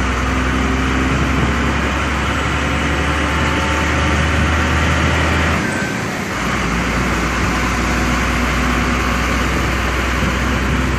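Engine and road noise inside the cab of a moving large vehicle: a steady low drone with a haze of tyre and wind noise. It breaks off briefly about six seconds in, then carries on.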